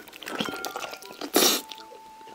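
Close, wet mouth sounds of a person eating spicy braised monkfish: slurping and sucking saucy pieces. There is one loud, sharp suck about a second and a half in.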